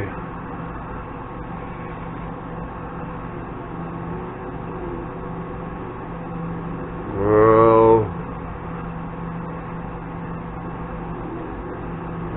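A steady low electrical hum of workshop equipment, with a man's short drawn-out vocal sound, like a 'hmm', about seven seconds in.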